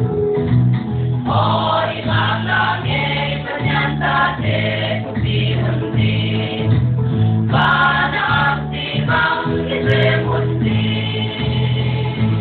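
A church choir singing a gospel praise song, with many voices together over sustained low notes.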